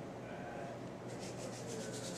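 Faint rubbing of fingers and tying thread on the fly in the vise, turning into a fast run of fine scratchy strokes, about eight a second, from about a second in.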